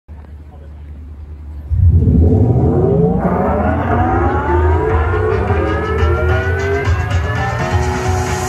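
Live rock band's amplified intro swell through the PA: a loud low rumble comes in suddenly about two seconds in, and a layered sweep climbs steadily in pitch under it, over a steady low hum from the sound system.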